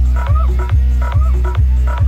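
DJ remix dance music played loud through a DJ sound system under test. A very heavy deep bass with a kick drum about twice a second, and short repeated synth stabs over it.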